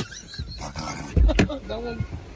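Two men stifling laughter: strained, half-held-back laughs, with a low thump of breath or a bump on the microphone about a second in.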